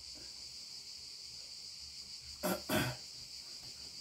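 Faint steady electronic hiss, with two short throat sounds from a man in quick succession about two and a half seconds in.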